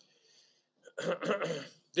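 A man clearing his throat once, about a second in, during a pause in his speech.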